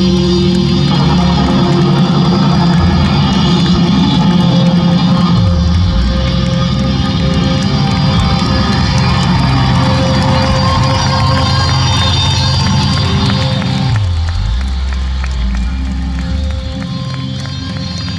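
Live rock band playing loud through a concert PA: electric guitars, bass and drums, with two low downward slides, one about five seconds in and one near fourteen seconds. The music eases a little in level over the last few seconds.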